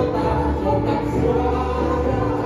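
Live acoustic band performing a folk-pop song: a woman and a man singing together over strummed acoustic guitar and violin, with steady bass notes underneath.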